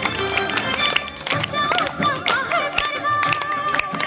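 Chhattisgarhi patriotic song with a sung melody over steady drum beats, played through a portable loudspeaker.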